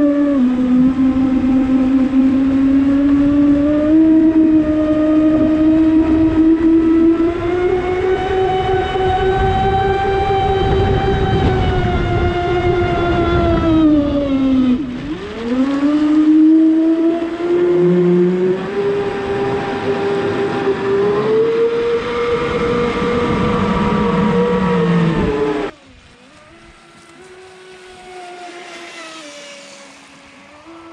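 Traxxas Spartan RC speedboat's brushless electric motor and drivetrain whining loudly, heard from on board with water rushing against the hull. The pitch creeps slowly upward, dives steeply about halfway through, then climbs back. Near the end the sound drops to a faint whine of the boat heard from far across the water.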